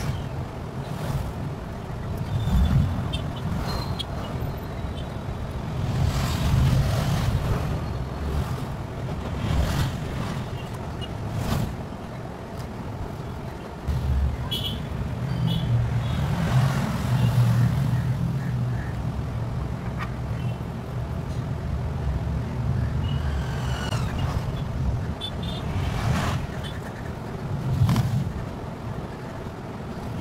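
Low background rumble that swells and fades every few seconds, with a few faint short scrapes and taps over it.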